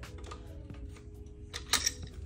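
Metal wrench clicking and clinking against a threaded damper install tool as a Ross harmonic damper is pressed onto the crankshaft snout. A sharper cluster of metallic clinks comes near the end. Faint background music with steady tones sits underneath.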